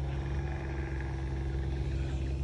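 A steady low engine drone, holding one even pitch with no change in speed.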